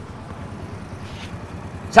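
Honda Wave S110 motorcycle's single-cylinder four-stroke engine idling steadily, running smooth and quiet after its service.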